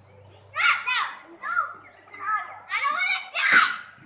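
Several children's high-pitched voices calling out and shouting in short bursts, the loudest about three and a half seconds in.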